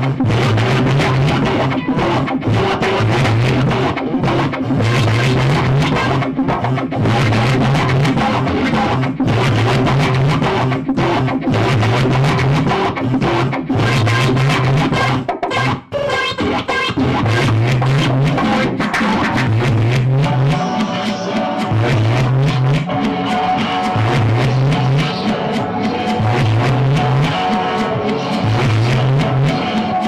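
Loud live experimental electronic noise music from synthesizers, effects pedals and electric guitar, built over a low figure that repeats about once a second. It cuts out briefly about halfway through, and steady held tones then join over the repeating figure.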